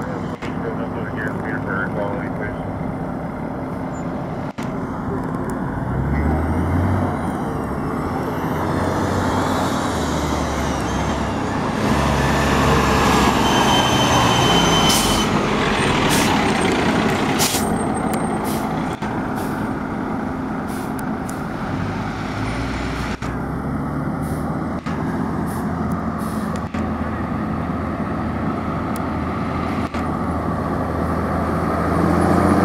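Diesel engine of a fire engine running as the truck rolls past close by, growing loudest about halfway through, with a few short air-brake hisses soon after.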